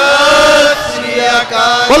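A Sikh congregation of many voices chanting together in unison, a devotional simran response. It is loudest at the start, eases after under a second, and swells again near the end.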